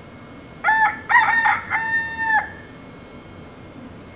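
A rooster crowing once: two short notes, then a long held final note that cuts off about two and a half seconds in.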